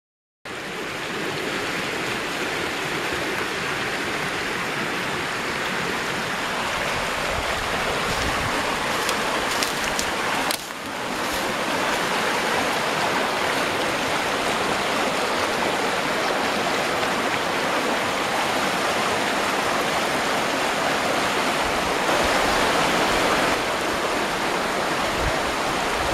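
Vizla river rapids at spring high water, rushing over low dolomite steps: a steady, full roar of water that dips briefly about ten seconds in.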